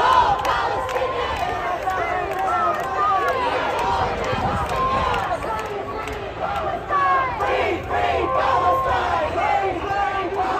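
A dense crowd of protesters, many raised voices shouting and talking over one another at a steady loud level.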